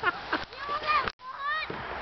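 A young child's short, high-pitched squeals and yelps, several in a row, with the sound cutting out briefly a little past one second in.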